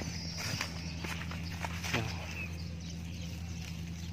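Faint rustling and scattered light clicks over a steady low hum, with a brief faint voice about two seconds in.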